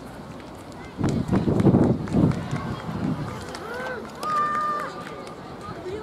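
A loud low rumble on the microphone for about two seconds, then voices calling out on the pitch, including one long high-pitched call.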